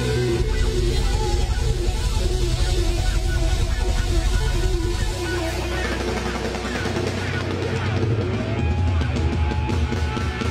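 Live rock band playing loudly, electric guitar to the fore over bass and drums.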